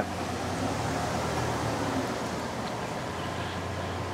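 Steady outdoor background noise: a low hum under a soft, even hiss.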